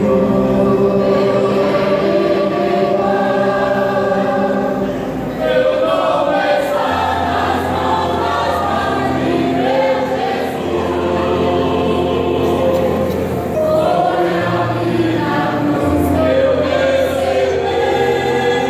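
Mixed choir of men and women singing together in long, held chords.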